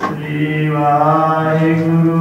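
A Sikh granthi chanting the Hukamnama from the Guru Granth Sahib in long, held melodic phrases into a microphone. A new phrase starts right at the beginning after a short pause.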